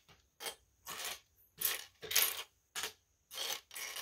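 Loose plastic LEGO bricks clattering against each other and the wooden tabletop as hands rummage through a pile of pieces, in about seven short bursts.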